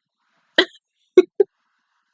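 A woman's short wordless vocal sounds: three quick bursts, the first breathier than the other two, with silence around them.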